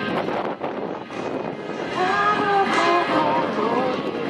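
A woman singing a song live with instrumental accompaniment. The backing plays alone at first, and her voice comes in strongly about halfway through, with a wavering, vibrato-like pitch.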